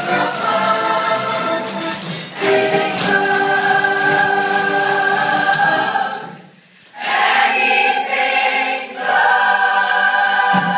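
A stage musical's full cast singing together in chorus, holding long notes, with a short break just after the middle before the singing resumes.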